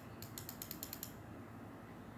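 Computer mouse scroll wheel ratcheting: a quick run of about eight light clicks that ends about a second in.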